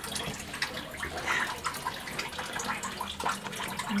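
Kitchen tap running steadily into a sink.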